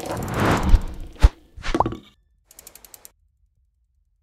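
Sound effects for an animated logo intro. A swelling whoosh runs into a sharp hit about a second in, followed by a short popping blip and then a few faint quick ticks.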